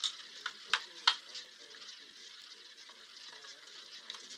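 Roulette ball rolling around the track of a spinning roulette wheel, a steady whirring rattle. A few sharp clicks come in the first second.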